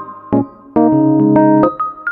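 Background music: a piano-like keyboard playing a slow melody over sustained chords.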